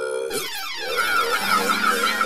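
Cartoon robot's electronic tones: a held beep that drops in pitch about half a second in, then a fast warbling electronic trill, with a low steady buzz joining partway through.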